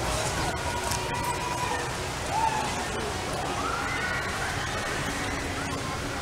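Outdoor crowd ambience: indistinct distant voices over a steady low background hum, with a short high call about two and a half seconds in.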